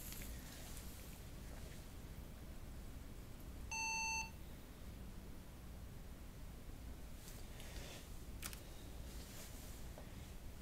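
HP Compaq dc7800p's internal speaker giving a single steady POST beep, about half a second long, about four seconds into the boot, as the firmware reports a 163 Time & Date Not Set error, which may mean the onboard battery has lost power. A faint steady hum lies underneath.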